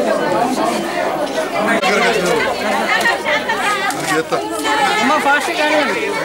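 Several people talking at once: overlapping chatter of voices.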